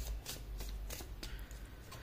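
A deck of tarot cards being shuffled by hand: a faint run of short card slaps and flicks, several a second.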